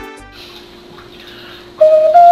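A homemade chocolate ocarina starts its first note near the end, a clear whistle-like tone, after a short stretch of faint room noise.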